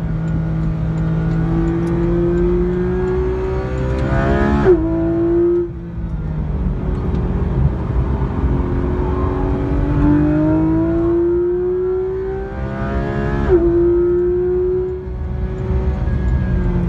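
Porsche 991 GT3 RS's naturally aspirated 4.0-litre flat-six at full throttle, heard from inside the cabin, revving up through the gears. It rises in pitch and drops sharply at two PDK upshifts, about five seconds in and again near thirteen seconds, with a brief lift just after the first.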